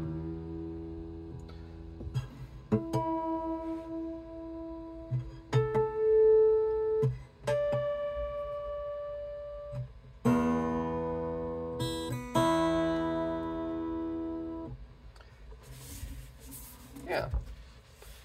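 Overhead travel acoustic guitar played to check its tuning right after the neck was reassembled without retuning. A few single strings are plucked and left to ring, then two full strums come about ten and twelve seconds in. The chords ring out and fade.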